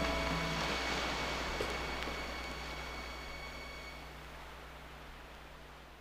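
The final acoustic-guitar chord of a folk recording dying away, its last high notes fading out by about two-thirds of the way through. It gets steadily quieter, leaving the recording's even hiss and a low steady hum.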